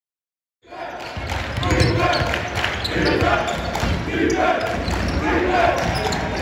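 Basketball being bounced on a hardwood gym floor during play, with voices of players and spectators in the gym. The sound cuts in suddenly under a second in, after silence.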